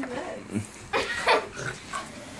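Boston Terrier growling in several short bursts as it tugs on a stuffed toy.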